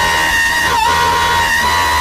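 A high-pitched voice holding one long, steady note, like a whoop or squeal, which dips briefly about a second in.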